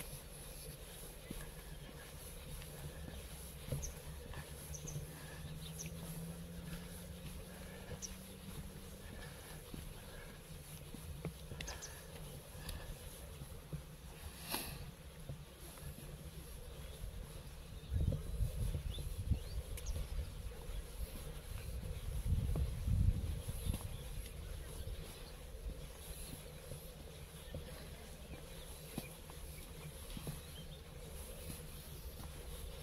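Quiet open-air ambience with a faint series of small high chirps in the first third and a single sharp click near the middle. Later come two spells of low rumble on the microphone.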